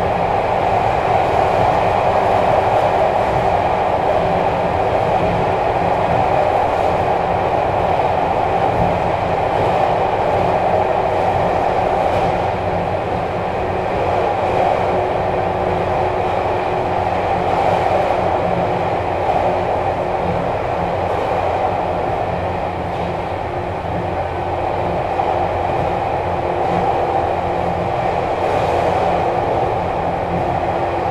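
Running sound of a 413-series EMU motor car (MoHa 412) with MT54 traction motors, heard from inside the car while travelling at speed: a steady rumble and road noise, with a faint steady tone that fades out about halfway through and a few light rail-joint knocks.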